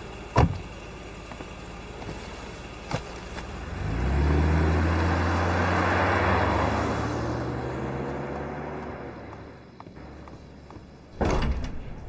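A car drives past: its engine sound swells in about a third of the way through, holds a steady hum, then fades away. A sharp knock comes near the start and a brief clatter near the end.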